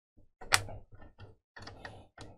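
Plastic clicks and rattling as the Raspberry Pi 400's keyboard case and circuit board are handled and worked loose, with one sharp click about half a second in followed by a run of smaller clicks.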